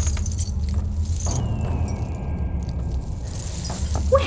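Strings of glass beads in a bead curtain clinking and rattling as someone pushes through them, settling after about a second, over a low steady drone.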